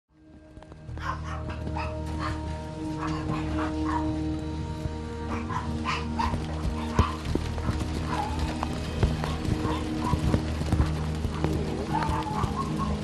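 Dogs barking and yelping in short repeated calls over a steady low hum.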